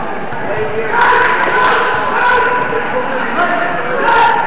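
Coaches and spectators shouting to the wrestlers during a bout, several raised voices overlapping; the shouting gets louder about a second in.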